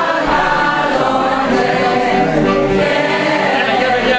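A choir of several voices singing together, holding long notes.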